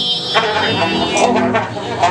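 Free-improvised music: a bowed double bass holding low notes under a trumpet played with a hand-held mute. A high, thin held tone sounds over them and stops a little past a second in, with one sharp attack just after.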